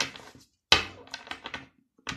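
A tarot deck being shuffled by hand: a sharp card slap about two-thirds of a second in, followed by a fast run of papery clicks that fades out.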